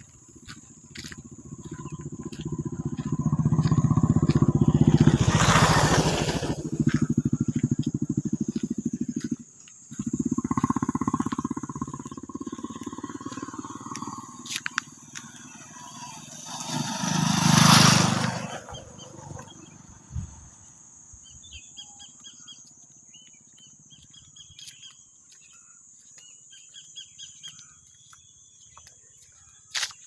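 Motorcycles passing close by on the road, one about five seconds in and another near eighteen seconds, with an engine drone between them. A steady high insect whine runs throughout, and faint bird or insect chirps come in near the end.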